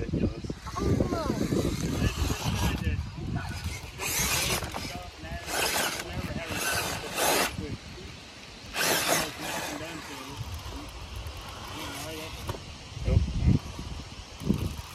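Stock Axial Capra RC rock crawler climbing a rock crack: about four short bursts of electric motor and drivetrain whine with tyres scrabbling on slick rock, with a thump near the end.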